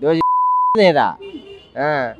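A steady single-pitch censor bleep, about half a second long, cutting sharply into a man's speech just after the start and masking a word.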